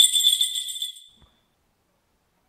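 Jingle bells shaken in a rapid shimmer, fading out over the first second.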